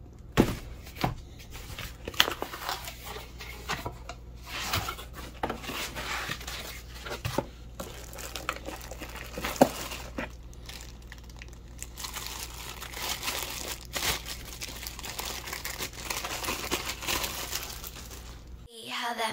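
Unboxing a 500-series preamp module: cardboard box flaps and foam being handled and the module's plastic bag crinkling as it is pulled off, with several sharp clicks and knocks along the way. A steady low hum sits underneath.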